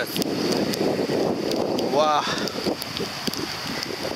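Muddy rainwater stream rushing strongly into the sea, with wind buffeting the microphone. The rushing is loudest for the first two seconds, then fainter.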